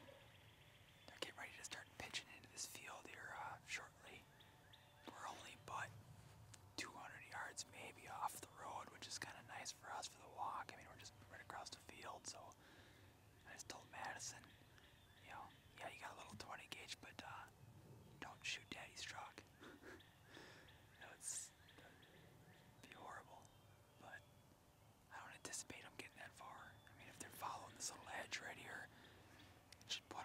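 A man whispering, soft and breathy, with short pauses between phrases.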